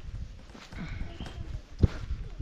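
Footsteps of a hiker walking on a dirt forest trail: uneven steps, with one heavier thud just before the end.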